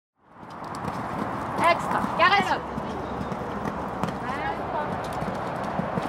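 A horse cantering on sand footing, its hoofbeats heard under people talking; the sound fades in at the very start.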